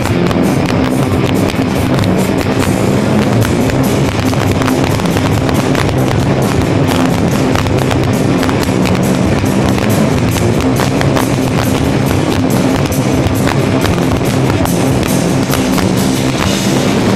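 Stoner/heavy rock band playing live and loud: electric guitars and bass held over a drum kit with constant drum and cymbal hits.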